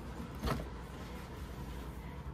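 A leather crossbody bag being handled: one short handling noise about half a second in as the strap is lifted, over a steady low hum.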